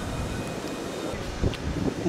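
Wind buffeting the camera's microphone, an uneven low rumble with no distinct events.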